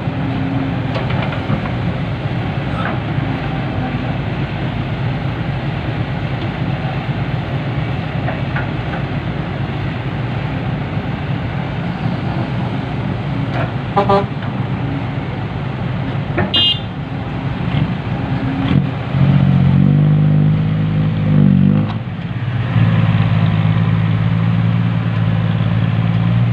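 Diesel engines of a Kobelco SK200 hydraulic excavator and a loaded dump truck running steadily while soil is loaded. A short horn-like toot sounds about 17 seconds in. From about 19 seconds the dump truck's diesel engine revs up as it pulls away under load.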